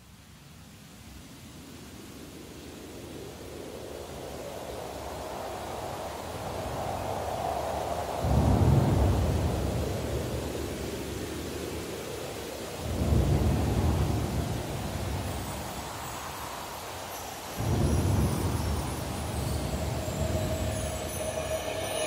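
Rain and thunder sound effects fading in as the intro to a song: a steadily rising hiss of rain broken by three deep rolls of thunder, about four to five seconds apart.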